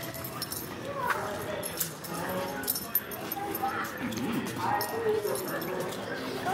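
A small cavapoo whining on the leash, a few short high whimpers, one falling sharply about a second in, over a steady murmur of indistinct voices in a large store.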